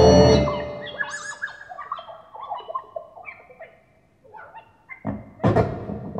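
Experimental electronic music from a hand-played instrument of upright rods. A loud chord at the start fades out, followed by scattered short pitched notes jumping up and down, a brief near-quiet moment, and then a dense clicking, clattering burst near the end.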